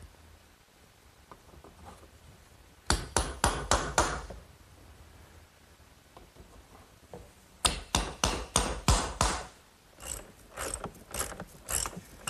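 Ratchet wrench tightening bolts through a wooden swing frame: quick runs of sharp clicks, about five a second, in three bursts, one about three seconds in, one near eight seconds and one near the end.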